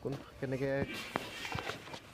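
A man's voice speaking a short phrase, followed by two soft footsteps.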